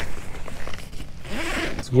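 Zipper on a fabric ice-fishing shelter being pulled: a short stroke at the start and a longer one about a second and a half in.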